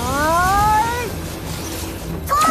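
A cartoon creature's high-pitched voice giving one rising cry about a second long, over a low steady background.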